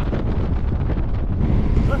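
Wind buffeting a handlebar-mounted camera microphone on a road bike at racing speed, a loud steady rumble.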